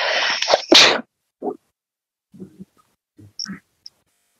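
A loud, breathy rush of air from a person lasting about a second, followed by a few short, quiet vocal sounds.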